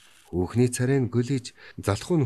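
A man reading aloud in Mongolian in steady audiobook narration, starting after a short pause.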